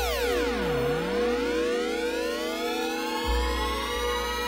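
Electronic synthesizer sweep opening an instrumental beat. A many-layered tone dives steeply in pitch, then slowly rises again over a steady held note. Under it a deep sub-bass drone drops out for a moment mid-way and comes back.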